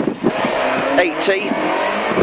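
Rally car engine under hard acceleration, heard from inside the cabin over road and wind noise.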